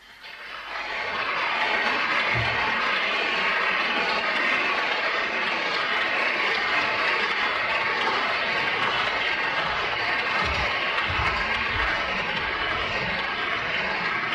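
Audience applauding, starting about half a second in and holding steady, once the piano has stopped.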